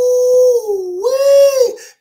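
A man's drawn-out, high-pitched vocal "ooooh", like a howl. It dips in pitch about a second in, then rises again and trails off.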